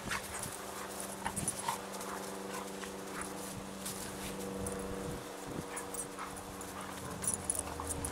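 Two dogs play-wrestling on grass: panting, with scuffling and quick clicks from their movement. A steady low hum runs underneath and stops near the end.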